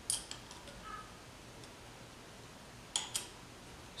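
Faint, scattered small metallic clicks of 10 mm nuts and carburetor hardware being handled and threaded onto studs by hand, with a couple of sharper clicks about three seconds in.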